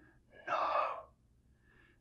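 A man whispering a single word, "No", breathy and without voice, about half a second in.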